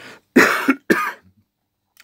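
A man coughing twice: a loud cough, then a shorter one about half a second later.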